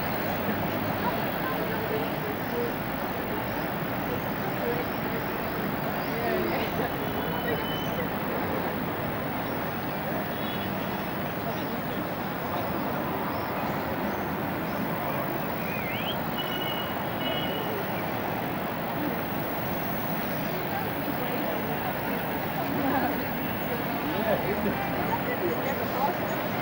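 Steady outdoor city ambience: a murmur of indistinct voices over a continuous street-noise haze, with a few brief high thin tones about ten and sixteen seconds in.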